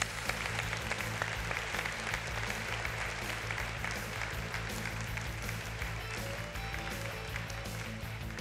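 Audience applause over walk-on music with a steady bass line; the clapping thins out toward the end while the music carries on.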